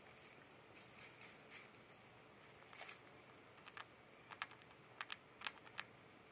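Long-haired hamster gnawing at its cage bedding: faint, irregular crisp clicks, a dozen or so scattered through the stretch, over near silence.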